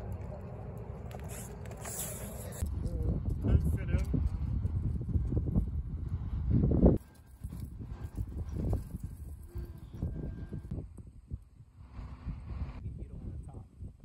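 Outdoor ambience: low rumbling noise, like wind on the microphone, with indistinct voices, changing abruptly at a few cuts.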